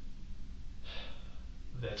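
A man's audible intake of breath about a second in, a short airy hiss, taken just before he speaks again, over a steady low room hum.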